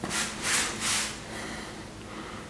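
A hand rubbing over dried kosher and rock salt crystals on watercolour paper: three short rubs in the first second, a weird noise that the painter puts down to his hand getting into the salt and, he thinks, salt hitting the floor.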